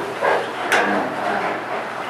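A man's voice speaking briefly and indistinctly, a few words drawn out, with a sharp consonant-like click about three-quarters of a second in.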